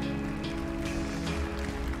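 Performance music with sustained held chords.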